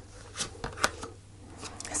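Tarot cards being handled: a card drawn off the deck and flipped over, making a few short, light snaps and slides, most of them about half a second to a second in.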